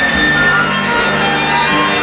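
Live pop-rock band music with sustained chords; the bass note drops just after the start.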